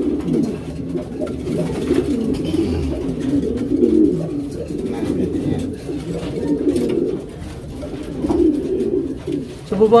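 Domestic pigeons cooing without a break, several low, wavering coos overlapping one another.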